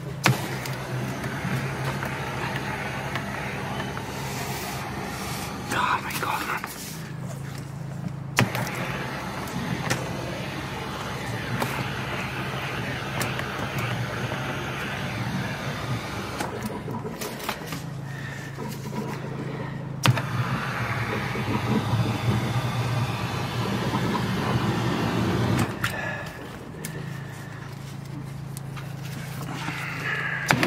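A drain jetter's engine runs steadily while high-pressure water hisses from the jetting hose working down a blocked interceptor drain, with a few sharp knocks from the hose.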